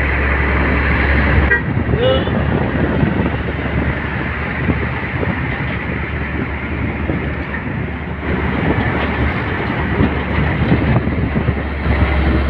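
Heavy truck driving slowly past at close range, its engine giving a steady deep rumble, with a brief horn toot about two seconds in.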